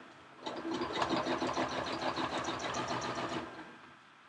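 Domestic sewing machine stitching a line of free-motion quilting: it starts about half a second in, runs at a steady speed with a rapid, even needle rhythm for about three seconds, then slows to a stop near the end.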